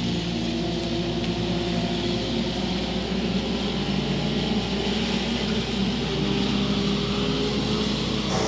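Front-wheel-drive dirt-track race cars running at speed, a steady drone of engines.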